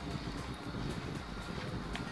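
Steady low rumble and hiss of outdoor background noise, with no distinct event standing out.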